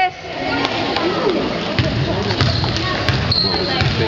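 A basketball bouncing and players' feet thudding on a hardwood gym floor in a large echoing gym, with several dull thumps that come more often in the second half.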